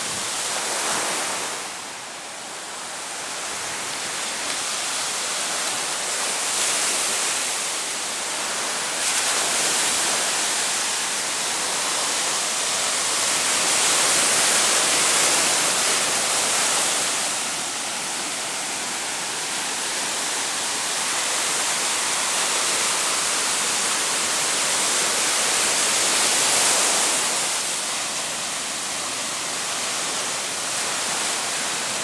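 Ocean surf breaking and washing up a sandy beach: a steady, loud hiss of water and foam that swells and fades in slow surges as each wave comes in.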